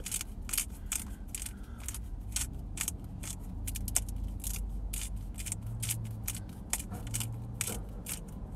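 Salt and pepper grinder being twisted to season a baked potato: a quick, uneven run of crunching clicks.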